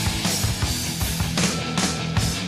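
Heavy metal song in an instrumental passage: distorted electric guitars and bass over a driving drum beat, with no singing yet.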